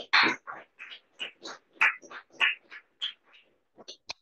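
Small audience applauding, heard as a choppy run of separate claps, a few each second, with silent gaps between many of them.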